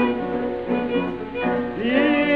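Old Greek popular song recording, from before 1945: a violin plays the melody over a steady rhythmic accompaniment, and a voice glides in to begin a sung phrase near the end.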